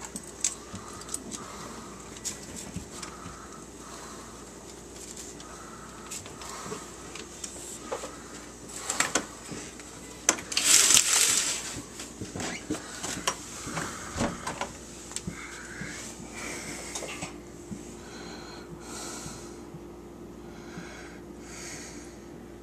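A door being opened and shut to let a dog out: scattered latch clicks and knocks, and a loud burst of rustling noise lasting about a second and a half just past the middle, over a steady low hum.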